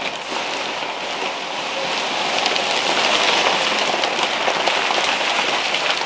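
Foam packing peanuts spilling and tumbling out of a cardboard box, together with crinkling wrapping paper, as a tall wrapped plant is pulled up through them. It makes a dense, steady rush of many small light hits, like rain.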